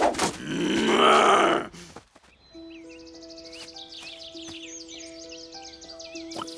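A loud, rough grunting growl from a cartoon animal lasting about a second and a half. From about two and a half seconds in, gentle background music follows, with long held notes and high twittering figures.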